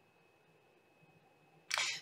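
Quiet room tone with a faint steady high-pitched whine, then near the end a short rush of noise lasting about a third of a second.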